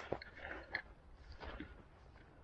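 Soft footsteps on grass, about three steps at an easy walking pace, with a faint crunch and rustle on each.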